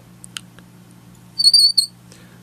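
A short, high-pitched warbling squeak in two parts, about one and a half seconds in, over a faint steady low hum, with a couple of soft ticks before it.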